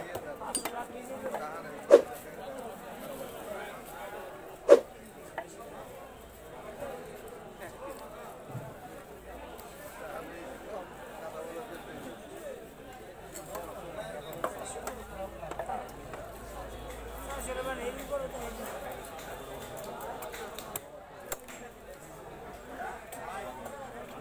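Indistinct voices chattering in the background, with two sharp knocks, about two seconds and about five seconds in.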